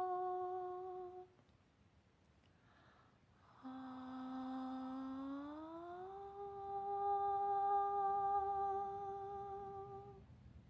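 A voice humming musical intervals. A held note stops about a second in. After a pause a lower note comes in, then slides smoothly up to a higher note that is held to the end.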